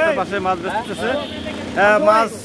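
Men talking in quick, overlapping bursts, with street traffic in the background.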